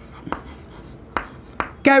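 Chalk writing on a chalkboard: a quiet scratching with a few sharp strokes as a word is written out.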